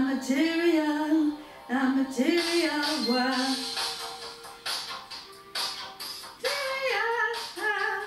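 A woman singing karaoke into a headset microphone over a backing track with a steady beat. She sings for about the first three and a half seconds, the backing track runs on alone for a few seconds, and she comes back in near the end.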